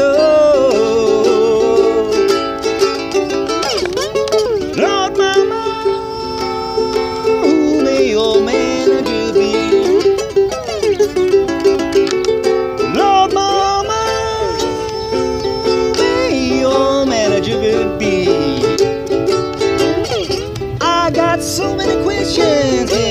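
Slide ukulele playing an instrumental blues break: plucked notes with frequent glides up and down in pitch from the slide.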